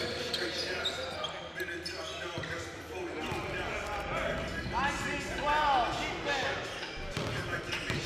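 Basketball dribbled on a hardwood gym floor, with repeated sharp bounces.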